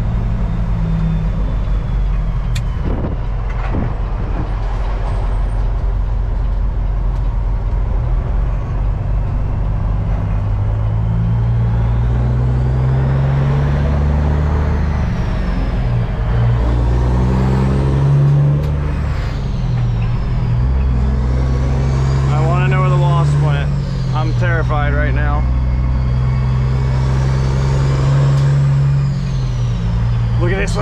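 Semi truck's diesel engine heard from inside the cab, pulling through the gears as it accelerates. The engine note climbs, drops at each upshift and climbs again, several times over.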